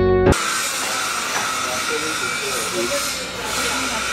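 Background music cuts off suddenly about a third of a second in, giving way to a steady hiss of open-air ambience with faint, indistinct voices in the background.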